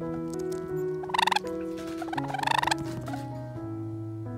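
Java sparrow giving two short, rapid rattling calls, about a second apart, loud over soft background piano music.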